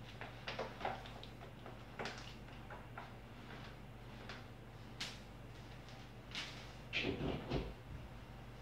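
Scattered light knocks and clicks of a person walking off in socks and laying out a vacuum cleaner's power cord across the floor, with a cluster of louder knocks and thuds about seven seconds in.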